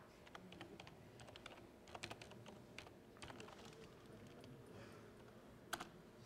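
Faint typing on a computer keyboard: irregular key clicks, a few per second, as a web address is keyed in.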